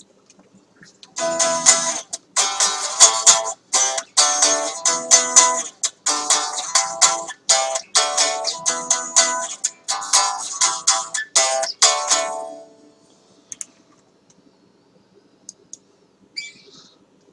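Electric guitar being picked: a run of single notes and chords for about eleven seconds that stops and rings away. A few faint clicks follow near the end.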